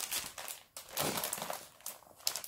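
Plastic-sleeved craft supplies and paper sheets crinkling and rustling as they are handled, in two short bouts, the second about a second in.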